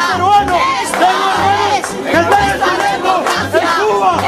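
A crowd chanting a slogan together, many voices rising and falling in rhythm, with a regular low beat underneath.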